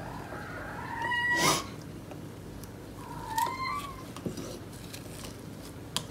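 A cat meowing twice: a longer call ending about a second and a half in, then a shorter one about three seconds in. A brief rush of breathy noise near the end of the first call is the loudest moment.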